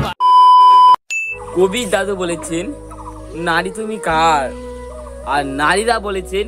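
An edited-in beep sound effect: a loud, steady tone lasting under a second, followed by a brief higher blip. Then comic dubbed audio with wavering, warbling tones over a low, steady background hum.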